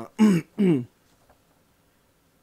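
A man clears his throat twice in quick succession: two short voiced rasps, each falling in pitch, in the first second.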